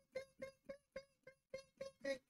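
A man imitating bat squeaks with his mouth: a quick string of short, quiet, pitched chirps, about four a second.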